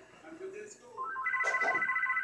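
Electronic phone ringtone: about a second in, a quick run of rising beeps leads into a loud, fast-warbling two-note trill that keeps going. Low voices murmur underneath before it starts.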